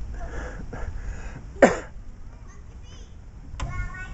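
Young children's voices and chatter at a playground, with no clear words. One short, sharp sound about a second and a half in is the loudest moment, and a brief pitched call follows near the end.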